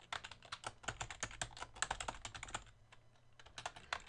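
Typing on a computer keyboard: a quick run of keystrokes, a short pause about three seconds in, then a few more keys near the end.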